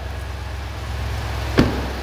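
Ford 7.3-litre gas V8 idling steadily just after start-up, with a single thump of the truck's door shutting about one and a half seconds in.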